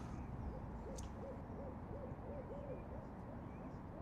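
An owl hooting faintly: a quick run of about nine short, soft hoots at an even pace, over a low background rumble.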